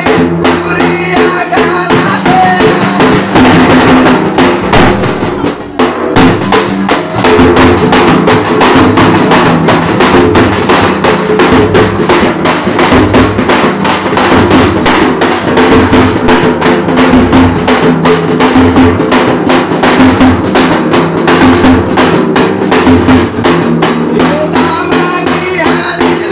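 Banjara dafda drums beaten fast with sticks in a dense, driving rhythm, with steady held melodic tones sounding under the strokes. The playing thins out briefly about five and a half seconds in, then picks up again.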